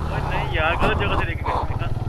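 Small single-cylinder motorcycle engine running steadily at low revs as the bike crawls over rough, slippery ground. A voice calls out briefly under a second in.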